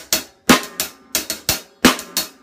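Drum kit groove: hi-hat played in triple strokes, sharp hits in quick clusters, with the snare drum on beats two and four.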